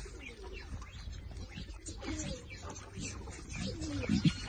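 Several birds calling over one another: short, low, gliding cooing calls mixed with higher chirps.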